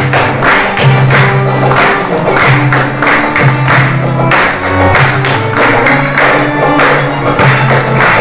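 Live Middle Eastern–Western fusion ensemble of oud, accordion and cello playing a rhythmic piece, with voices singing and hands clapping a steady beat about two or three times a second over a sustained bass line.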